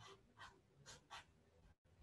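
Faint scratching of a felt-tip marker writing on paper: three short strokes in quick succession.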